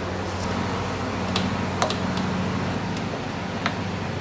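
A few light clicks and taps as an air filter and intake adapter are handled and pushed onto a Predator small engine's carburetor, over a steady low background hum.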